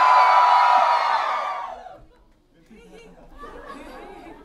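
Audience cheering and shouting together, loud at first and dying away about halfway through, leaving scattered quieter voices.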